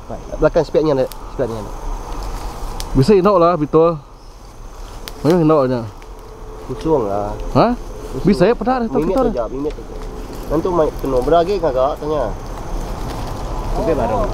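People's voices calling out and exclaiming in short bursts, some with a wavering, drawn-out sound, over a faint steady high insect chorus.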